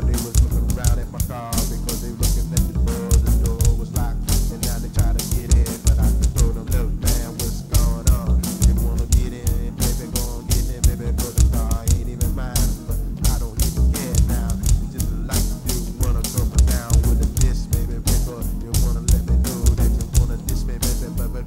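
Instrumental groove with bass and drums, and a trombone playing a line over it.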